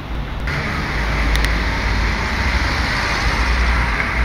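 Street traffic noise: a steady hiss of passing cars over a low rumble, which gets louder about half a second in.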